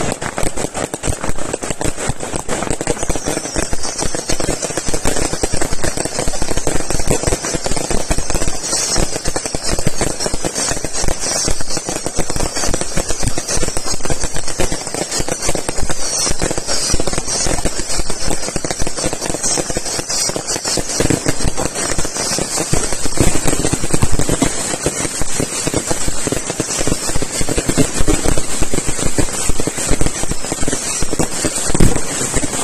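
Fireworks display in a dense, continuous barrage: rapid bangs and crackling with no pause. From a few seconds in until about two-thirds through, many short falling whistles run over it.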